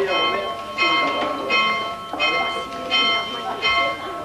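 A church bell rung with steady repeated strokes, about one every three-quarters of a second, each stroke ringing on into the next.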